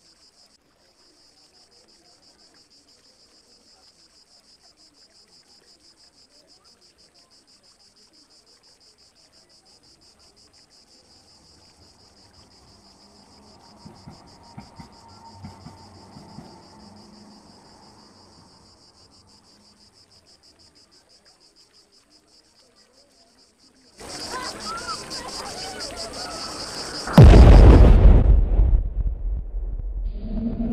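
A played soundscape of a summer morning: a faint, steady high chirring of insects, with a faint low drone that swells and fades about halfway through. About 24 seconds in, a sudden loud noise breaks in, and about three seconds later a much louder, deep blast follows: a recreation of the atomic bomb exploding.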